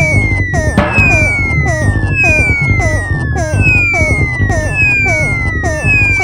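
Experimental electronic synthesizer music: a steady pulse about four beats a second under a high siren-like tone that slides slowly downward, restarting about every second and a bit so the falling slides overlap.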